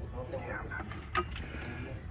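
Faint background talk, with a single sharp click just over a second in.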